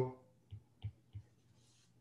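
Stylus tapping on a tablet's glass screen while writing: three short clicks about a third of a second apart.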